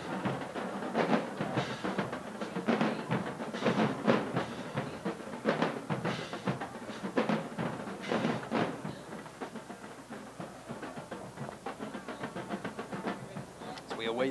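Drums playing a percussion beat, with sharp hits roughly every half second and a somewhat quieter passage toward the end.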